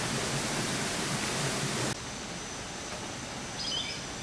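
Steady rushing noise of running water, which cuts off abruptly about two seconds in, leaving quieter outdoor ambience. A short high bird call sounds near the end.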